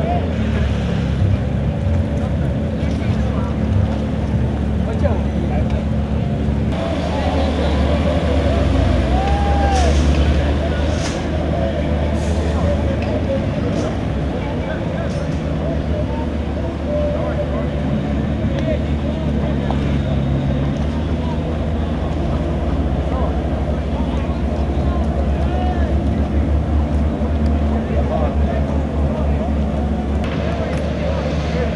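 Outboard motors running on boats on a river: a steady low hum, with people talking in the background.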